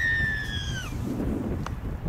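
Referee's whistle: one long blast of about a second, sagging in pitch as it ends, signalling a try.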